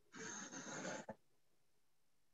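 A single breath out through the nose, lasting about a second and picked up faintly by a laptop or phone microphone, followed by a small click.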